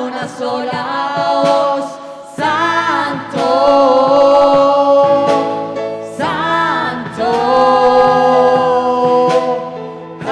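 Live church worship band with singers performing a Spanish-language praise song. The voices hold long notes with vibrato in two long phrases, starting about two and a half seconds in and again about six seconds in.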